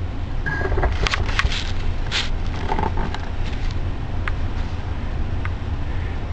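Handling noise as a compact camera is set onto a white PVC-pipe multipod: a burst of sharp clicks and knocks, then two faint ticks later, over a steady low hum.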